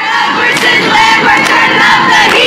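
A group of young women chanting loudly together, many voices in unison.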